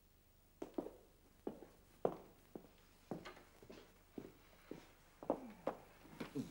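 A woman's footsteps in a small room, about a dozen short, irregular steps, ending as she sits down on a sofa.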